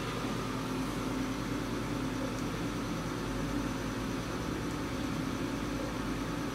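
Steady hum and hiss of a saltwater reef aquarium's pumps and water-circulation equipment running, with a few faint steady tones in the hum.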